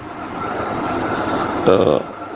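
A steady rushing background noise, like a distant engine or passing traffic, that grows louder over about a second and a half. A single spoken word follows near the end.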